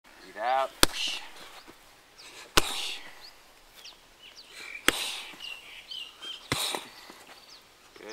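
Four sharp impacts of kicks landing on a hand-held heavy bag, about two seconds apart.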